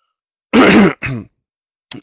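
A man clears his throat in two short bursts, the first and louder one about half a second in.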